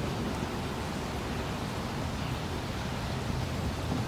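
Steady outdoor background hiss with a low, even hum underneath; no distinct events.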